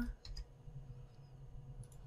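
A few faint clicks of computer input during data entry: two shortly after the start and one near the end, over a faint low steady hum.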